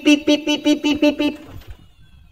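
A fast run of short beeps on one steady pitch, about seven a second, stopping about a second and a half in, followed by a few soft low knocks.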